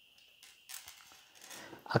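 Faint rustling of a leather wallet being handled and set down onto a small stand, in two soft spells with no sharp knock; a man's voice starts right at the end.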